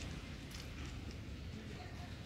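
Quiet outdoor background noise: a steady low rumble with a couple of faint clicks.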